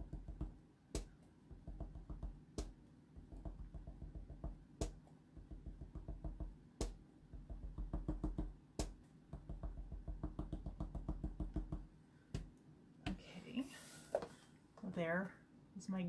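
Small rubber stamp tapped rapidly and repeatedly onto card and ink pad, soft dull taps several a second, with an occasional sharper click.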